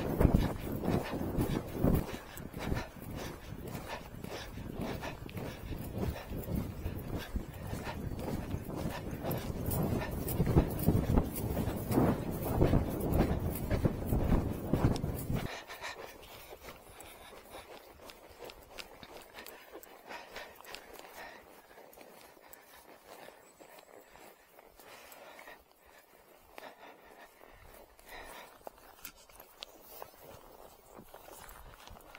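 An Arabian horse moving fast over grass, its hoofbeats heard under heavy wind noise on the microphone. About halfway through, the wind noise stops abruptly, leaving softer, scattered hoofbeats.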